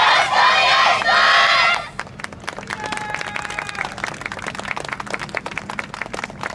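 A yosakoi dance team shouting together in two long group cries. These are followed by a scatter of sharp claps and clacks.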